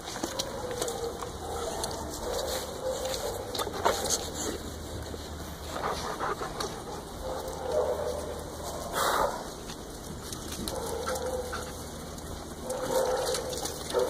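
A group of dogs at play, with scattered short dog sounds and a few brief knocks over a steady background.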